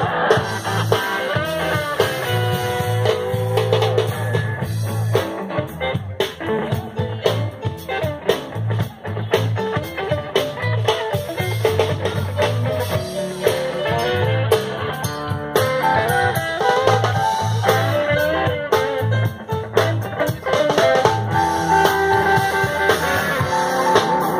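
Live band playing an instrumental stretch without singing: electric guitar lines over a drum kit and a pulsing bass.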